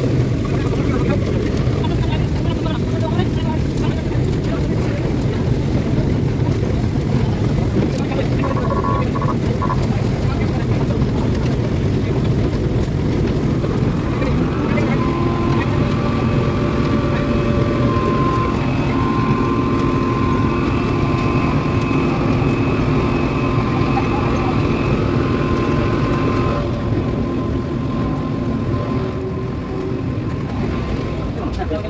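Asphalt plant burner and its blower fan running, a loud steady low drone. About halfway through, a steady high whine joins in and drops away a few seconds before the end.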